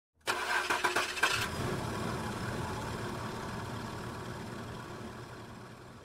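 A car engine starting: about a second of sharp, uneven strokes as it catches, then a steady idle that slowly fades out.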